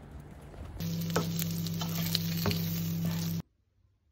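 Food frying in a pan, sizzling with scattered spattering pops over a steady low hum, for about two and a half seconds; it starts abruptly about a second in and cuts off suddenly near the end.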